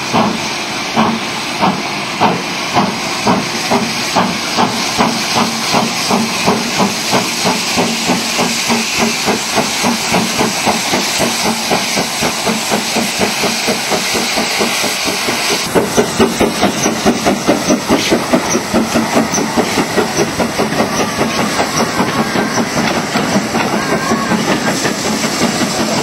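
GWR King class four-cylinder 4-6-0 steam locomotive 6024 King Edward I working a train, its exhaust beats quickening as it gathers speed and passes close by. A steady hiss of steam runs under the beats and cuts off about two-thirds of the way through.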